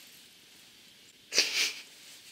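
A single short, breathy burst of breath from a woman close to the microphone, about one and a half seconds in; the rest is quiet room tone.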